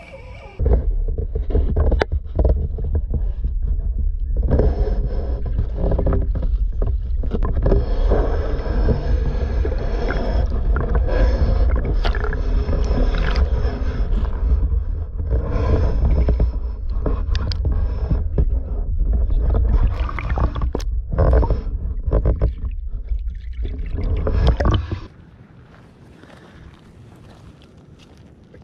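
Muffled underwater rumble and water sloshing, picked up by a camera held submerged in a pond, with scattered clicks and knocks against the housing. It stops about 25 seconds in, leaving quiet outdoor background.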